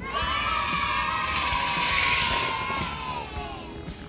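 A high-pitched voice holding one long 'aah' for about three and a half seconds, dropping slightly and fading near the end.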